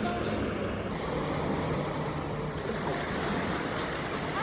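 Small waves lapping and washing onto a shoreline, a steady surf noise with no sharp events.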